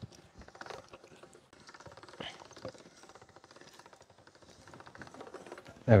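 Hand-cranked pasta machine turning, its gears giving a fast, even clicking as a sheet of dough is rolled thinner between the rollers.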